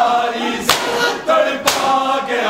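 A crowd of men singing a noha together, with the sharp slap of many palms striking bare chests in unison (matam) about once a second, twice in these seconds.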